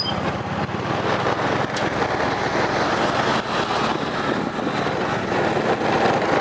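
Motorbike crossing a steel truss bridge: a steady rumble of tyres over the ridged deck with a low engine hum underneath.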